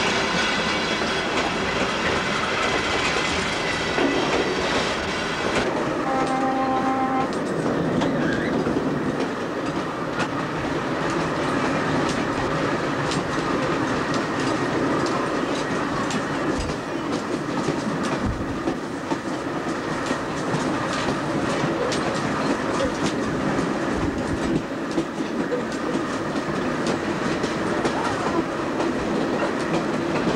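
Hershey Electric Railway interurban train running along jointed track, with a steady rolling rumble and irregular clicks and knocks as the wheels cross rail joints. A short horn note sounds about six seconds in.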